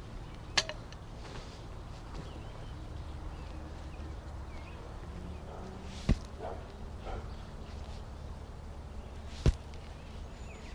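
Pickaxe blade striking into hard clay soil: three sharp thuds, about half a second in, about six seconds in and near the end.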